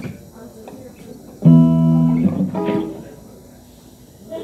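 Amplified electric guitar: one strummed chord about one and a half seconds in, ringing for about a second, then a softer chord that fades away.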